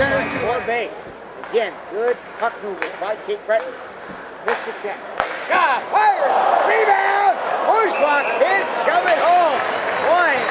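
Ice hockey arena sound: voices carry throughout, with two sharp cracks from play on the ice about four and a half and five seconds in, and crowd noise building in the second half as the home team presses toward a goal.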